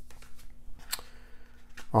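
Light handling of paper and card, with a single sharp click about halfway through.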